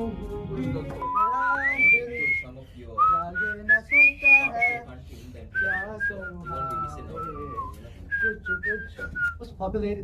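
Someone whistling a tune that slides up and down in pitch, with a held note about a second in, and voices faintly underneath.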